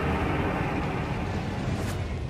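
Cinematic sound effects for an animated countdown intro: a loud, steady low rumble, with a short rising whoosh near the end.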